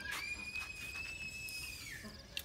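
A child's long, high-pitched scream, held steady for nearly two seconds and dropping off at the end.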